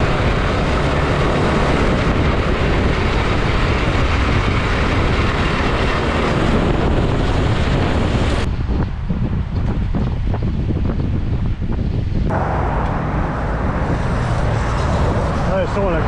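Loud, steady wind rush on a cyclist's camera microphone while riding in traffic, mixed with the engine and tyre noise of a truck alongside. A few seconds past the middle the hiss thins out and the sound turns rougher for a few seconds before the rush returns.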